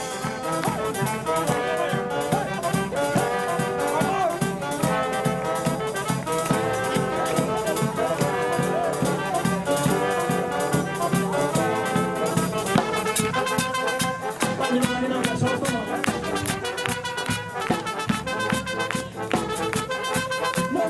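A xaranga (street brass band) playing live: saxophones, sousaphone, trombone and trumpets over a bass drum, a brisk dance tune with a steady beat.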